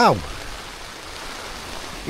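Heavy rain falling steadily on a tent's flysheet, heard from inside the tent as an even hiss. A man's voice says "wow" right at the start.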